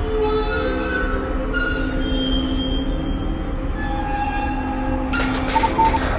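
Ambient soundscape from the night-walk installation's speakers: layered sustained drone tones over a low rumble, the tones shifting pitch every second or two. About five seconds in comes a crackle of clicks and a few short beeps, like a radio switching on.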